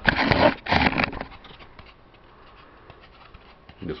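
Handling noise: two short bursts of scraping and rustling in the first second as a styrofoam fairing is picked up and moved about, followed by a few faint scattered ticks.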